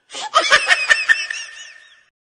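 Laughter in quick bursts with wavering, rising-and-falling pitch, loudest in the first second and fading away, then cut off abruptly at the end. It is a laugh added in editing as a sound effect.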